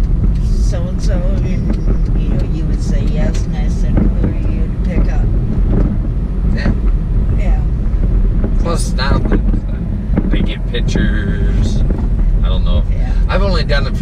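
Steady low road and engine rumble inside the cabin of a moving car, with snatches of conversation over it.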